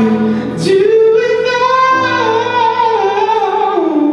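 A man singing a long high note, reaching it about half a second in, holding it with a slight waver and sliding down toward the end. Under it, sustained piano chords from a Nord Stage 3 keyboard, changing about halfway through.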